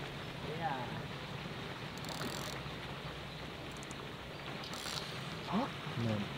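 Quiet outdoor background with a steady faint hiss of wind, broken by brief faint voice fragments about a second in and near the end.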